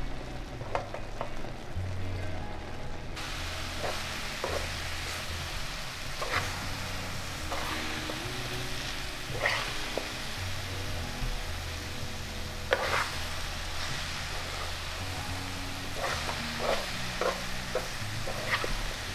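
Metal spoon stirring and scraping a sticky mixture of jackfruit seeds in caramelizing sugar syrup in a pan, with a steady sizzle and occasional scrapes and clinks against the pan. The sizzle grows louder about three seconds in.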